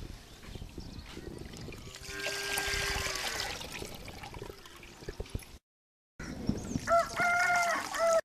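Liquid leaf extract trickling and dripping through a plastic sieve into a bucket, with a rooster crowing once about two seconds in. The sound cuts out briefly just past the middle.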